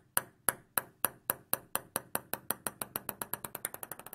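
A table tennis ball dropped onto a hard surface and bouncing to rest. The bounces come quicker and quicker and fade, ending in a fast rattle.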